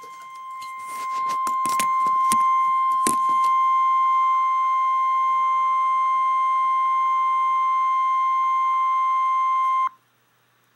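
NOAA Weather Radio warning alarm tone: one steady beep near 1 kHz sounding for about ten seconds before a severe thunderstorm warning broadcast, through a weather radio receiver's speaker. It swells over the first two seconds, holds level and cuts off abruptly. A few sharp clicks come in the first three seconds.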